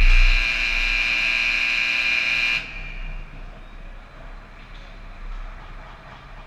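Ice rink scoreboard horn sounding one loud, steady buzz for about two and a half seconds, then cutting off suddenly.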